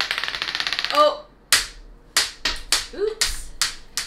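A plastic die rolling and rattling across the tabletop, a rapid run of clicks for about a second. This is followed by a short vocal sound and several short, breathy bursts.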